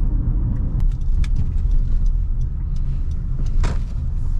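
Cabin noise of a K24-engined Honda CR-V driving at low speed: a steady low engine and road rumble, with scattered light clicks and a brief rattle near the end.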